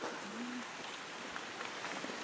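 Quiet forest-trail ambience: a faint, steady rushing hiss with a few soft ticks, and a brief low hum about half a second in.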